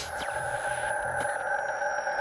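Electronic intro sound design for an animated logo: a sustained synthesized drone of several steady tones, with faint falling sweeps and soft ticks about once a second.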